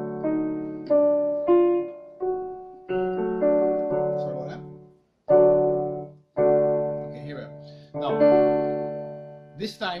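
Electronic keyboard in a piano voice playing a slow series of chords, each struck and left to fade before the next, with two brief breaks near the middle.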